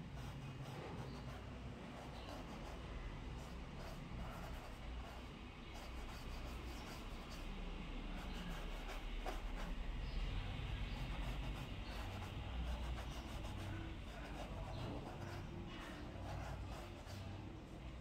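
Soft scratching of a fine paintbrush rubbed across a canvas panel as a sketch line is drawn, over a steady low room hum.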